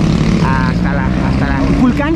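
A steady low engine drone with the indistinct voices of people talking over it.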